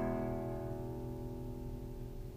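A chord on a 1913 Antonio de Lorca classical guitar with a tornavoz, ringing on and slowly fading away with no new notes played.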